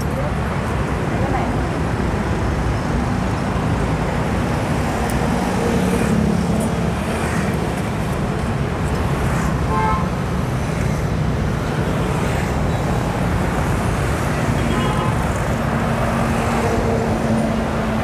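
Steady traffic noise from a busy city road, with motorbikes and cars passing close by.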